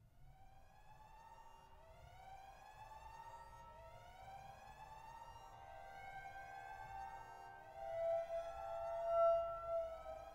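Eerie horror-score tones: overlapping rising glides, a new one starting every couple of seconds, swelling louder and peaking near the end with a held tone.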